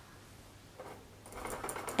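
Quiet room with a faint low hum, then from about a second in, soft rustling and light clicks that grow louder toward the end, as a person moves and reaches an arm toward the wall.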